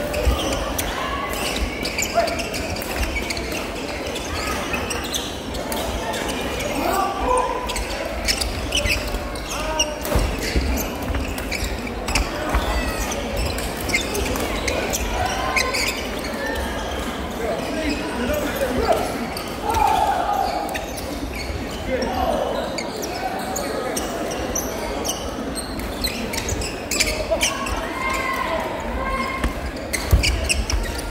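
Badminton doubles rally echoing in a large sports hall: repeated sharp racket strikes on the shuttlecock and thuds of players' footwork on the court. Voices call out here and there in the background.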